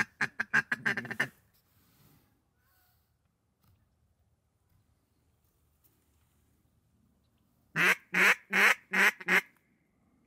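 A duck call blown in quacks to ducks in the air: a fast run of quacks that trails off about a second in, then a long quiet stretch and five loud, evenly spaced quacks near the end.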